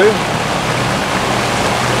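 Steady rushing of wind, rain and breaking sea around a sailing yacht's cockpit in a thunderstorm, with a low steady hum underneath.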